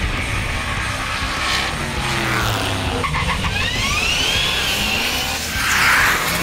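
Drag-race car engine running hard at full throttle, with tires squealing in a high pitch that rises and then falls through the middle.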